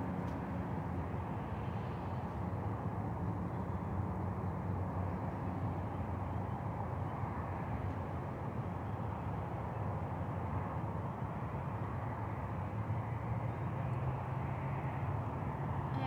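Steady outdoor background noise of traffic, with a low engine hum that shifts lower in pitch after the middle.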